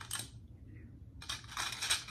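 Bundle of thin black metal shoe-rack tubes clinking and rattling against each other as they are handled. There is a short clink at the start, then a longer run of rattling in the second half.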